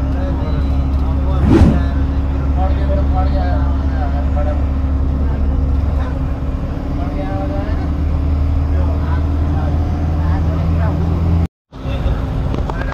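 Steady low drone of a moving vehicle's engine and road noise heard from inside the cabin, with faint voices in the background. There is one sharp thump about a second and a half in, and the sound cuts out for a moment near the end.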